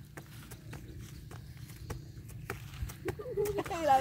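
A garden hose swung as a jump rope, tapping the grass on each turn as a girl skips over it: a regular series of light taps, about two or three a second. Voices come in near the end.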